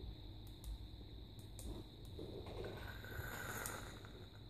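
Faint, scattered clicks of the small push-buttons on a bare vape mod control board being pressed to switch it from temperature control back into power mode.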